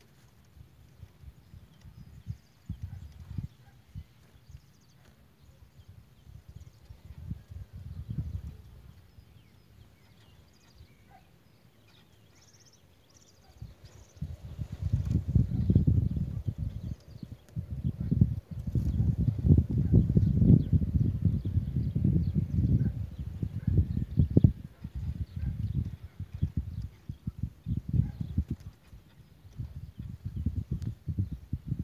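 Wind buffeting the phone's microphone: a low, irregular rumble, faint at first, then much louder gusts from about halfway through.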